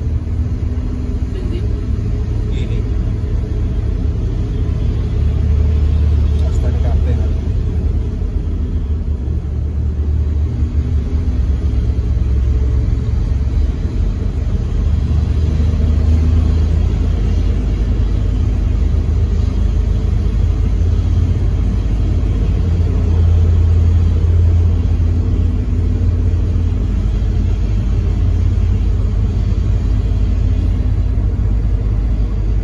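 Bus engine and road rumble heard from inside the cabin while driving in slow traffic. The low rumble is steady and swells several times as the engine pulls harder.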